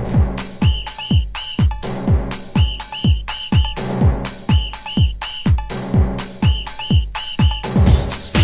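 Flash house dance music: a steady kick drum with a falling-pitch thump about twice a second, under a high whistle-like lead riff played in short repeated phrases of three or four notes.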